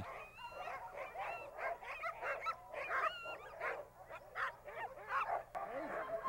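A team of sled dogs in harness whining and yipping all at once, many short calls overlapping, eager to be off on a run.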